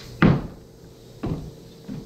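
Dull knocks and thuds as a large white sculpture piece is tilted and set down off a wheeled plywood dolly onto a concrete floor: one loud thud about a quarter-second in, a softer knock about a second later and a smaller one near the end.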